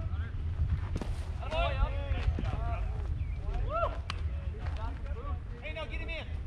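Voices of players and spectators calling out across a baseball field, over a steady rumble of wind on the microphone, with two brief knocks about one and four seconds in.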